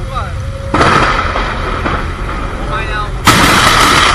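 Two sudden, loud thunder cracks from a close lightning strike, the first about three-quarters of a second in and a louder one just after three seconds, each trailing into a sustained rumble. Brief human exclamations are heard faintly in between.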